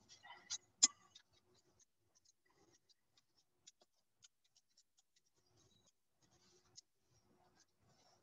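Faint scattered clicks and taps of small moulded recycled-plastic carabiners being pushed out of a hand injection mould, the loudest just under a second in.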